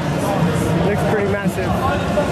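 Voices talking over background music amid the general din of a busy hall; no impacts or lifting sounds stand out.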